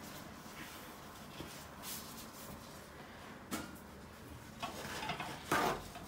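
Soft rubbing and handling of a paper towel wiping a countertop, with a few short scuffs, the loudest near the end.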